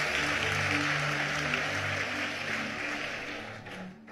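Congregation applauding over background music with steady held low notes; the clapping and music die away near the end.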